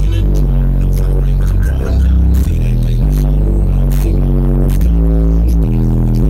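Hip-hop music played loud through a car audio system of twelve NSV4 12-inch subwoofers, with deep, drawn-out bass notes.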